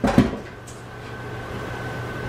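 Two quick knocks of things being handled in a kitchen, right at the start, then a steady low hum with a thin, high, steady whine over it.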